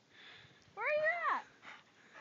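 A dog's single whine, rising then falling in pitch and lasting about half a second, about a second in.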